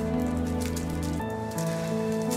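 Soft background music of sustained, held chords that shift to new notes about a second in, with light crackling rustle of paper envelopes being handled.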